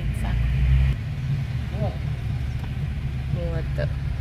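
Car engine and road rumble heard inside the cabin, heavier in the first second and then steady. Brief voices come near the end.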